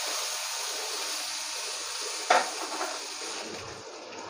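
Flat beans frying in hot mustard oil in a kadai, a steady sizzle that fades near the end, with one sharp knock of the metal spatula against the pan about two seconds in.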